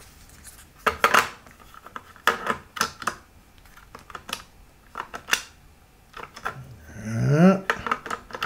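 Hard objects clicking and clattering irregularly as a pile of batteries is rummaged through by hand in search of a charged one.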